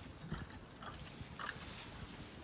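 A pig smacking its mouth as it eats fruit purée: a run of short, irregular mouth clicks and smacks.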